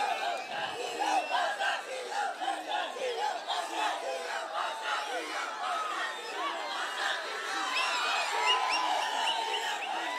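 A large crowd of many voices shouting and cheering together, a steady dense din with no single voice standing out.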